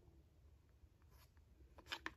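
Near silence, broken by two faint, brief rustles from handling the beaded lace appliqué, one a little past the middle and a slightly louder one just before the end.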